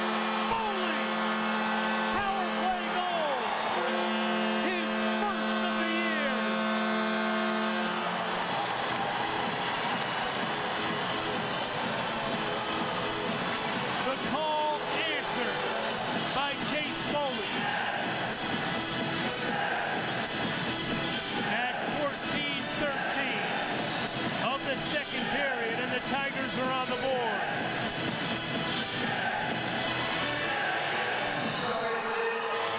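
Arena goal horn sounding a steady multi-tone chord in two long blasts, the second cutting off about eight seconds in, celebrating a home goal over loud crowd noise. After that the crowd noise carries on, mixed with music.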